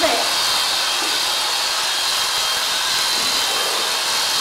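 Sure-Clip electric horse clippers running steadily with a thin high whine as the blades clip through a horse's thick coat.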